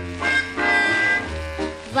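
Orchestra playing a short instrumental fill between sung phrases: a held high melody line over a pulsing bass, in a 1950s studio recording.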